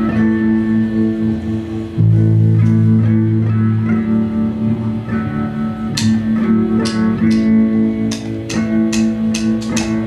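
Live rock band playing an instrumental passage: guitars hold a droning chord, a deep bass note comes in about two seconds in, and sharp percussive strikes join about six seconds in, two or three a second.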